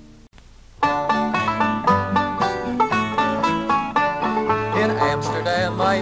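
The previous song's last chord fades out, then after a short gap, about a second in, a five-string-style folk banjo and acoustic guitar start an instrumental introduction: quick picked banjo notes over the guitar's steady bass notes.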